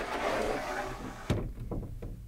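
Interior sliding door of a Dethleffs Beduin Scandinavia caravan's rear bathroom being slid shut: a sliding, scraping run that ends in a sharp knock as the door reaches its stop about one and a half seconds in.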